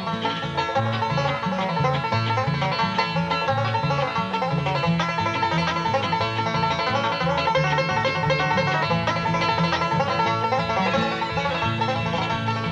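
Bluegrass band's instrumental break led by a five-string banjo picking a fast run of notes, backed by acoustic guitar rhythm and a walking upright bass on a steady beat.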